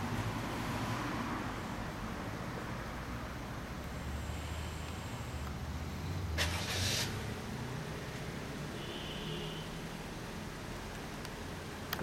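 1996 Kawasaki Zephyr 1100RS's air-cooled inline-four idling through a BEET Nassert aftermarket exhaust, a steady low note, with a brief louder noisy burst about six seconds in.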